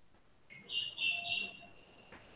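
A high, steady whistling tone starts about half a second in and holds for about a second and a half, loudest in the middle.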